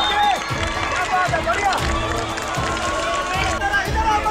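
Several voices shouting and calling over one another, none of them making out words, with a low thump about twice a second underneath.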